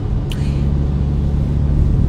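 Steady low engine drone and road rumble heard from inside a moving car's cabin.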